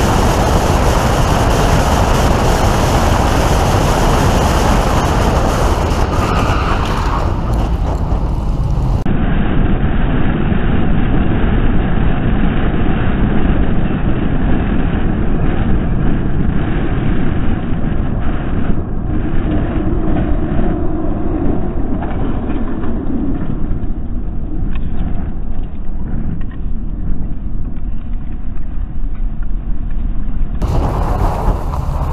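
Steady road and engine noise of a car driving at speed, heard from inside the cabin: a loud low rumble of tyres and engine. About nine seconds in the sound turns duller and stays so.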